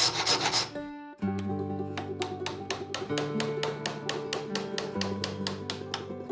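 Rapid hand-tool strokes rasping on a wooden diple chanter blank clamped in a vise, stopping under a second in. After a brief gap, music follows: steady held notes over a quick, even ticking beat.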